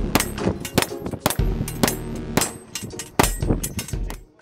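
A rapid, uneven string of gunshots, several a second, as a shooter fires at steel targets.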